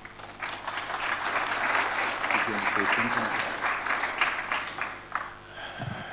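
Audience applauding, rising about half a second in and dying away shortly before the end.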